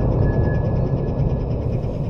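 Low rumbling echo of the plasma cannon's shockwave slowly dying away after the discharge, with a faint steady whine above it.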